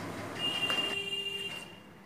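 A faint, steady high-pitched whine lasting a little over a second, with a weaker low hum under it; it fades out before the end.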